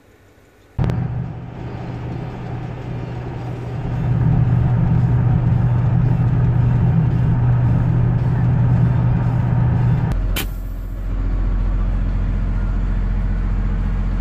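Vehicle engine and road noise heard from inside the cab while driving, a steady drone that gets louder about four seconds in. Around ten seconds in, an abrupt cut switches to a deeper, steady drone from another drive.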